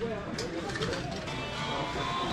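Indistinct background talk from people nearby, with some music underneath.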